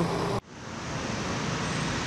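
Steady road-traffic noise of a city street, an even rush with no distinct events. It breaks off abruptly about half a second in, then comes back up to a steady level.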